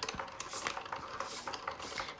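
Cricut Joy cutting machine cutting Smart Vinyl: its motors run with a faint steady whir as the blade carriage and rollers move, with light scattered clicks.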